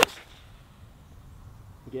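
A Srixon ZX7 forged 4-iron striking a golf ball off a tee: a short swish of the swing, then one sharp crack of impact with a brief ringing tail. The strike has what is called a forged feel and sound.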